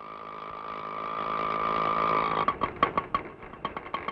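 Auto-rickshaw engine running as it drives up, growing louder, then cutting out about two and a half seconds in. A run of irregular clicks and rattles follows.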